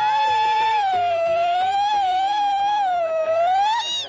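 A woman's zaghrouta, the trilling Egyptian ululation of celebration: one long, loud, high call held near one pitch, sagging and rising slightly, with a quick upward flourish just before it stops near the end.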